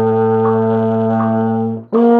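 Euphonium holding a long low A, then jumping up to a high B-flat just before the end: the wide leap that takes an embouchure change from low to high register.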